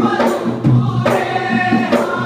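Bodu beru music played live: a group of men singing together over hand-beaten barrel drums, with the drum strikes marking a steady beat under the voices.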